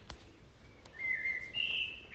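A thin, high whistle-like tone comes in about a second in, holds one pitch, then steps higher. It sits over faint room tone.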